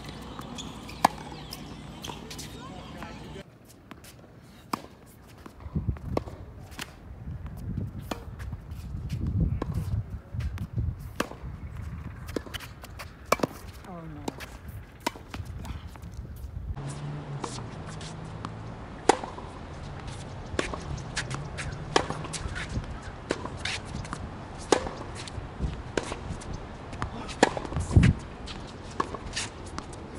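Tennis balls struck by rackets and bouncing on a hard court during rallies: sharp pops at irregular intervals, some louder than others.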